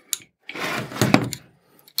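A steel block with plastic parts is set down and shifted on a wooden workbench. There is a small click, then about a second of scraping with one sharp knock in the middle.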